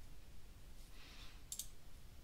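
A quick double click of a computer mouse about one and a half seconds in, over faint room noise.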